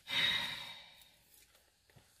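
A person's breathy exhale, a short sigh-like rush of breath that fades away within about a second.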